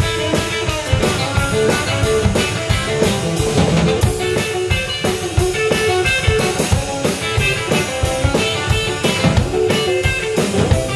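Electric guitar and drum kit playing rock together live, loud and continuous, with sustained guitar notes over a steady drum beat.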